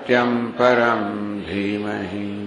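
A man chanting a Sanskrit verse in a sung recitation. The final syllable is drawn out into one long, level note near the end.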